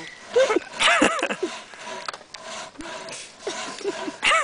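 People laughing in short bursts, strongest in the first second and a half, then fading to scattered chuckles.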